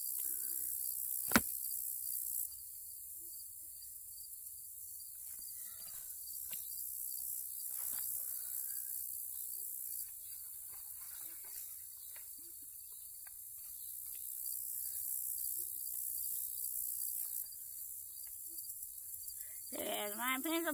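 Rummaging in a backpack: soft rustling and scattered small clicks and knocks, with one sharp click about a second in, the loudest sound. A steady high-pitched insect chorus runs underneath.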